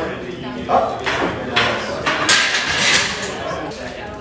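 Voices in a gym weight room during a bench press attempt, with loud hissing bursts of breath or shouting between about one and three seconds in.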